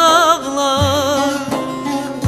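Instrumental break in a Turkish folk song (türkü): plucked string instruments accompany a high melody line with a strong, wavering vibrato, and no words are sung.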